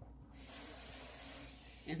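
Running water, a steady hiss that starts abruptly about a third of a second in, as more water is added to the soup pot.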